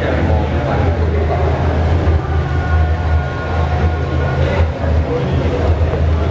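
A steady low hum runs under indistinct voices of people close by.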